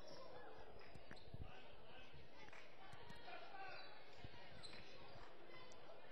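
Faint sound of a basketball game in a gymnasium: a basketball bouncing on the hardwood court with a few dull thuds, under a low murmur of distant voices.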